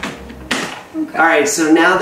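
A man talking, starting about a second in, after a brief sharp click.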